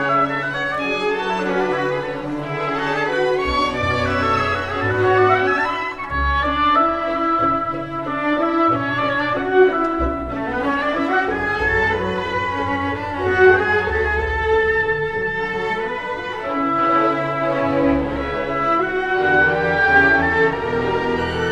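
String orchestra playing classical music: violins carry moving melodic lines over cellos and double basses, whose low notes change every second or two.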